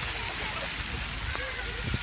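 Steady hiss of spraying water from a park water feature, with faint voices in the background.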